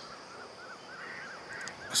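Faint bird chirping: a quick run of short, repeated notes.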